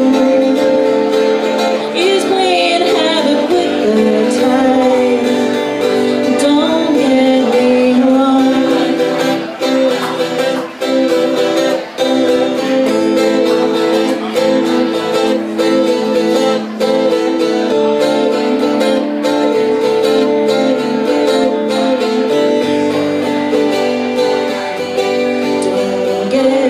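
Live folk-rock song: an acoustic guitar strummed steadily while a woman sings. Her voice is heard in the first few seconds, and a stretch in the middle is guitar alone.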